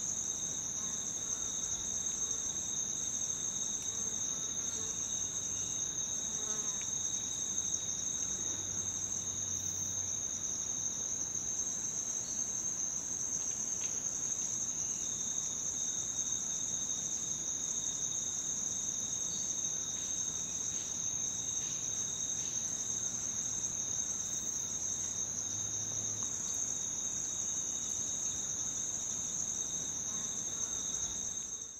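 Steady chorus of insects, high-pitched and unbroken, with a fainter, lower-pitched second band of song beneath it.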